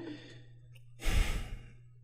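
One person's heavy exhale or sigh into a close microphone about a second in, lasting about half a second and fading away.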